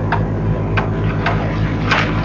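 A steady low hum with sharp ticks about twice a second.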